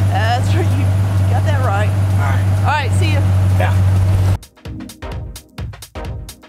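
Idling engine with a steady low hum, and a man's voice calling out in wordless rising and falling sounds over it. About four and a half seconds in, this cuts off suddenly to electronic music with a steady beat.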